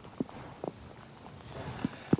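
Faint storm wind-and-rain noise on an outdoor microphone, with a few short, soft knocks during a lull in the wind.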